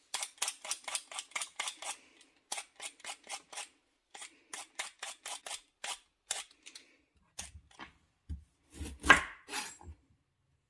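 A Y-peeler scraping the skin off a purple root vegetable in quick strokes, about four a second, in runs with short pauses. Near the end come a few dull thuds, the loudest about nine seconds in.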